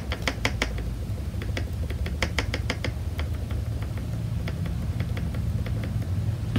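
Makeup sponge dabbing acrylic paint onto small wooden cutouts: light, irregular taps, several a second.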